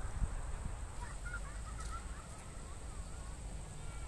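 Birds calling in the distance: a run of short, wavering calls starting about a second in and lasting a couple of seconds, over a steady low wind rumble on the microphone.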